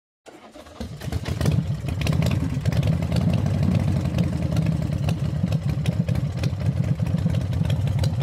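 An engine running with a steady low rumble, building up over the first second and a half and then holding level.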